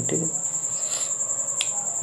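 A steady, high-pitched background tone with a fine, even pulse runs under a pause in speech. A single short click comes about one and a half seconds in.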